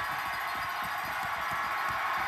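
Arena crowd cheering steadily as two hockey players fight on the ice.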